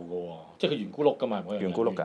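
Speech only: a man talking in Cantonese, with a brief pause just before the middle.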